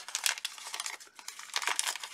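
Paper and washi tape crinkling and rustling as they are handled, a run of small irregular crackles with a sharp click at the start.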